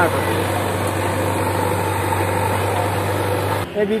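Diesel engine of a JCB backhoe loader running steadily with a low hum, under a haze of site noise; it cuts off sharply near the end.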